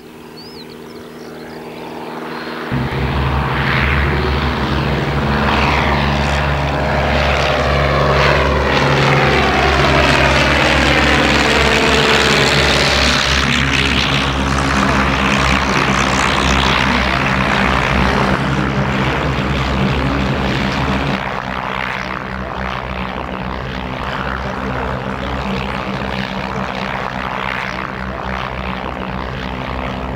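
De Havilland Canada DHC-1 Chipmunk's Gipsy Major four-cylinder engine and propeller running at takeoff power. The sound builds over the first few seconds, with a swooshing, shifting tone as the aircraft passes close by, then settles to a slightly quieter steady drone as it climbs away.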